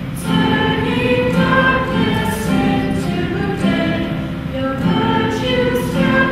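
A choir singing, several voices holding notes together and moving from note to note every second or so.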